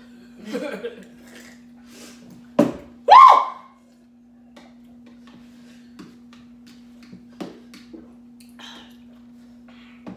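A laugh, then about two and a half seconds in a sharp burst followed by a loud voiced cry that bends up in pitch, the loudest sound, from people reacting to the burn of very hot noodles. After it, only small clicks and sips over a steady low hum.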